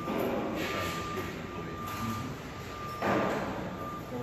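Construction-site background noise: a steady high-pitched tone over a low rumble, with rushing bursts of noise at the start, just under a second in, and loudest about three seconds in.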